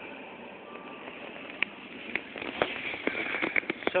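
Handling noise of a hand-held camera being turned around: a run of small clicks and rubbing that thickens over the last two seconds, over a steady hiss of room noise.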